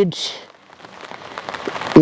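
Rain falling on umbrellas close to the microphone, a faint hiss with scattered drop ticks.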